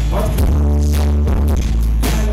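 Live band music played loud: strummed acoustic guitar over a drum kit and a heavy bass, with drum hits at the start and near the end.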